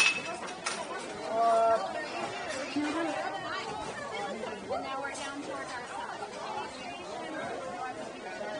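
Many voices chattering in a busy restaurant with an open kitchen. A single sharp clink, ringing briefly, comes at the very start, and one voice stands out louder about a second and a half in.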